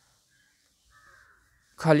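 A faint, short harsh animal call about a second in, over otherwise quiet room tone.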